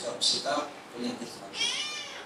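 A man speaking into a microphone in short, broken phrases, with a brief high-pitched wavering sound near the end.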